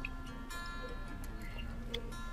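Quiet acoustic guitar background music with held notes, with a few faint clicks, one at the start and one near the end.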